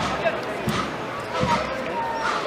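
Deep drum beats at a slow, even pace, about one every three-quarters of a second, over the talk of a crowd.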